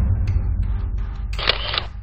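A camera shutter click sound effect, once, about one and a half seconds in, over a low steady background music bed.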